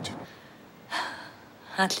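A person takes one short, audible breath about a second in. A spoken word begins just before the end.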